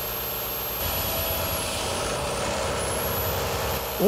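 Volvo semi-truck running along the highway: a steady rumble of engine and tyre noise that grows a little louder about a second in as the truck comes closer.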